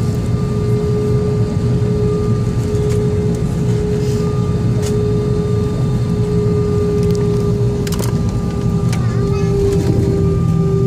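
Steady cabin drone inside an Airbus A320-232 moving on the ground: a constant low rumble with a steady mid-pitched hum running through it. A few short clicks come about eight seconds in.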